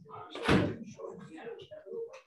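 A door shuts with a single loud thud about half a second in, over indistinct background talk.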